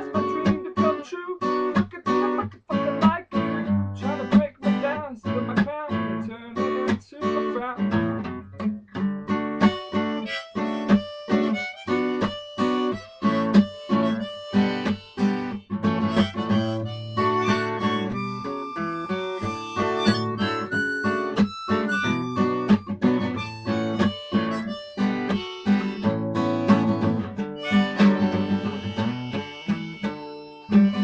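Acoustic guitar playing an instrumental passage of picked and strummed chords, with long held notes laid over it from about ten seconds in.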